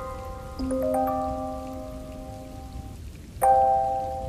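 Music box playing a slow melody over a steady rain sound. A few notes struck about half a second in ring on and fade, then there is a brief lull before a louder group of notes near the end.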